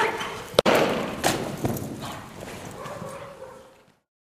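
Belgian Malinois sprinting across arena sand, its paws thumping, after a short pitched call at the start. A sharp click about half a second in; the sound fades away near the end.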